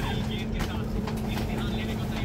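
Stationary electric suburban train humming steadily with a constant mid-pitched tone from its onboard equipment, heard from inside the carriage, with indistinct voices in the background.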